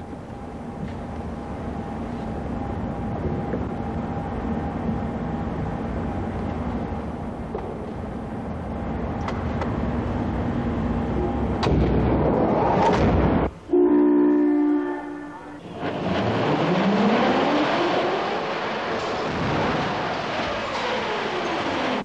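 Mechanical noise in a crash-test hall: a steady machine hum at first. About 14 s in, a horn-like signal sounds for about two seconds, then a rushing run-up noise follows, with tones that rise and then fall away.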